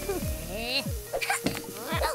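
Cartoon soundtrack: background music under a cartoon baby's wordless vocal sounds, short rising-and-falling cries, with a few sharp clicks near the end.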